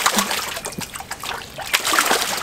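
Water splashing and sloshing in a tub as a wooden-framed sifting screen full of gravel is rocked and tapped flat in the water, with several sharp slaps as it hits the surface. This is the 'rock and tap out' stroke that washes and settles gravel when sieving for diamonds.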